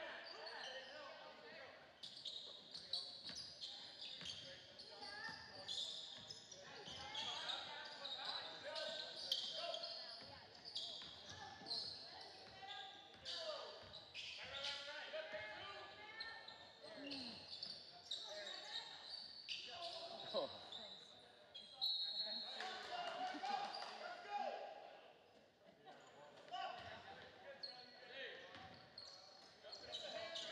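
Basketball game in a gym: a ball bouncing on the hardwood court and sneakers squeaking, among shouting voices and crowd chatter, all echoing in the large hall.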